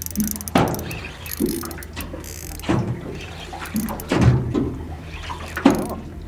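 Small waves slapping irregularly against a boat's hull, about once a second, over a steady low hum.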